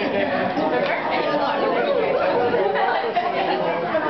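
Many people talking at once, overlapping party chatter with no single voice standing out.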